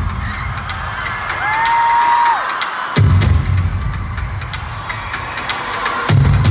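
Live concert music played loud over an arena sound system. A deep pulsing bass drops out about a second in and comes back near three seconds, over a steady run of sharp clicking percussion. Around two seconds a single clear tone slides up, holds and falls away.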